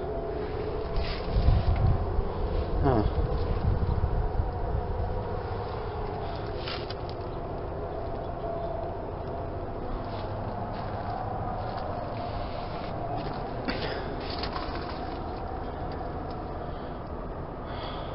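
Steady low hum of outdoor heat pump and air-conditioner units running in the background, with some low rumble of wind or handling on the microphone in the first few seconds and a few faint clicks.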